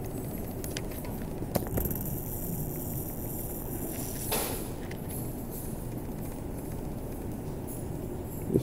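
Steady low background rumble, with a sharp click about a second and a half in and a short rush of noise about four seconds in.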